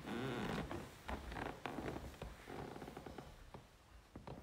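Soft rustling and creaking with scattered short clicks, louder in the first second and fading toward the end.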